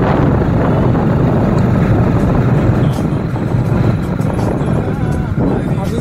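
Steady rush of wind over the microphone and road noise from a moving two-wheeler, with its engine running underneath.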